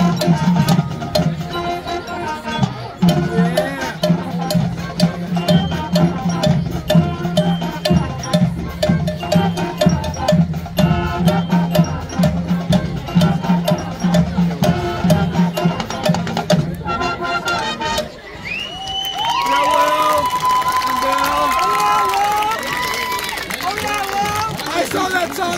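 Marching band playing: brass over a steady low bass line with drumline and percussion strokes. The music stops about three quarters of the way through, and crowd cheering with whoops and a whistle follows.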